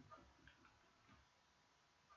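Near silence with a few faint ticks of a mechanical pencil tip on paper as a diagram is drawn.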